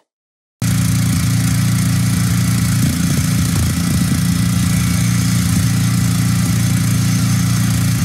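Power grinder cutting into a steel lock on a shipping container door, running steadily and loudly after a brief silence at the start.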